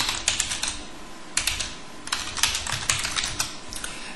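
Typing on a computer keyboard: a quick run of key clicks in several short bursts, entering a word into a text box.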